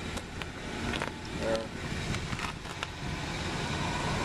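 Steady low background rumble with several light clicks scattered through it.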